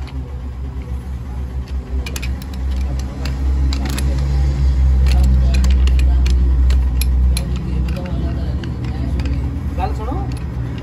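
A steady low engine rumble that swells for a few seconds in the middle, with scattered light metallic clicks and taps from a pipe wrench being adjusted and set on a steel bottle jack.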